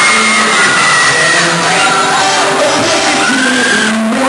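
Live solo acoustic performance: a man singing held notes into a microphone over a strummed acoustic guitar, with the ring of a large hall.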